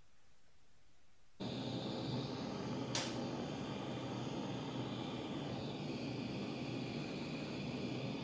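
Handheld gas torch burning with a steady hiss as it heats a layer of beeswax encaustic paint to fuse it to the layer below. The hiss starts abruptly about a second and a half in, and there is one sharp click about three seconds in.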